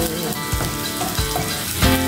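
Sliced red onions sizzling in oil in a nonstick wok, stirred with a wooden spatula that scrapes and taps across the pan.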